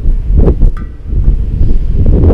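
Wind buffeting the camera's microphone: a loud, uneven low rumble that swells and dips in gusts.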